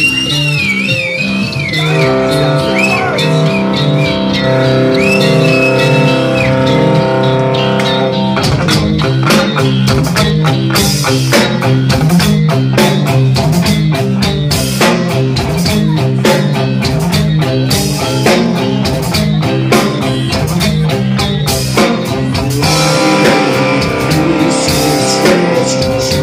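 Live rock band playing an instrumental passage: a high electric guitar line bending in pitch over held chords and bass, then the drum kit comes in about eight seconds in and the full band plays on.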